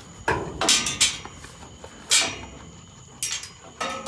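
Metal pipe gates of a livestock pen knocking and clanking as animals bump them: about six sharp, irregular knocks with a short ring.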